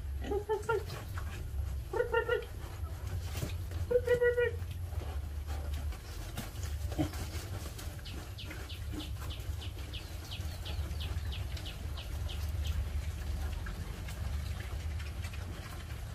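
Piglets giving three short squealing calls in the first five seconds, then chewing greens in a run of quick soft clicks, about three a second, over a steady low hum.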